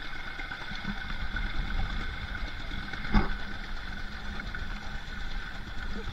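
Steady low rumble of wind on the microphone out on open water, under a constant machine-like hum, with a single knock about three seconds in.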